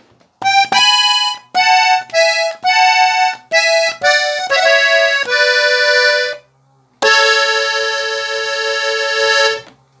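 Hohner Compadre three-row diatonic button accordion tuned in E (Mi), playing a phrase of about a dozen short two-note chords. After a brief pause it holds one long chord for about two and a half seconds.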